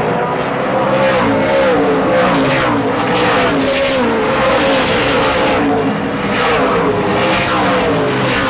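A pack of super late model stock cars racing past one after another, their V8 engines revving and wavering in pitch. From about a second in, car after car goes by in a steady run of passes.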